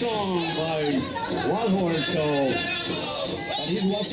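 Powwow singing: several voices together in high phrases that slide downward, over the voices of a crowd.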